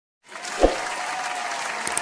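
Applause, a steady wash of clapping that starts about a quarter of a second in, with a single low thump soon after.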